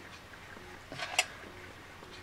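A single sharp click about a second in, preceded by a faint rustle, over quiet room tone.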